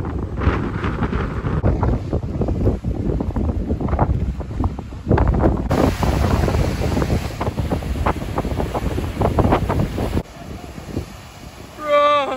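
Strong wind buffeting the microphone over waves surging and breaking on lava rock. The sound changes abruptly about six seconds in and again about ten seconds in, and is quieter in the last two seconds.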